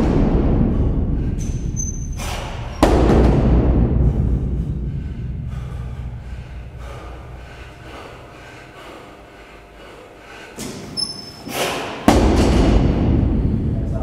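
A loaded barbell with bumper plates set down hard on the floor twice, about three seconds in and again near the end. Each heavy thud is followed by a long, fading rattle and echo.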